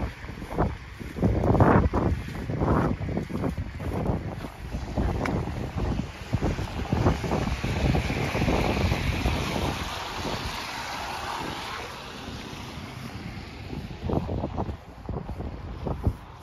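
Gusty wind buffeting a phone's microphone in uneven rumbling blasts. A hiss swells and fades in the middle.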